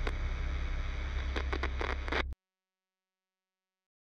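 Low steady rumble of a horror soundtrack, with a few short scraping noises over it, cutting off suddenly a little over two seconds in, followed by silence.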